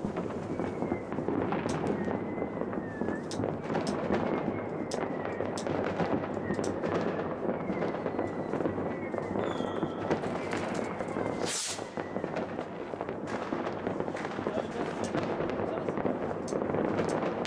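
Fireworks going off: a dense, continuous crackle with many sharp bangs and pops scattered through it, one of the loudest about three quarters of the way through.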